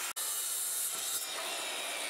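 Bosch circular saw ripping a strip from a plywood sheet along a track guide, a steady cutting noise with little low end.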